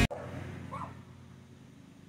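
Intro music cuts off at the start, leaving quiet background in which a dog barks once, faintly, a little under a second in.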